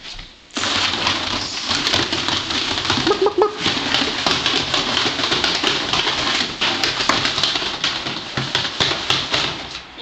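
Young ferrets at play, scrabbling around and into a corrugated plastic tube: a loud, dense run of scratchy rustling with rapid clicks that starts about half a second in.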